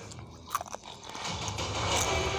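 Crunching and scraping noises close to the microphone, with one sharp click about half a second in, and a low rumble swelling near the end.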